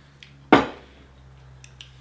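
A single loud knock of dishware on the table, about half a second in, dying away quickly over a low steady hum.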